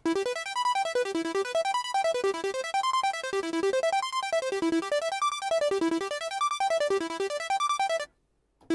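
Martinic AX73 software synthesizer playing its 'Portal Sweep' arpeggiator preset: a bright, retro synth arpeggio of quick notes that run up and down in repeated sweeps about once a second.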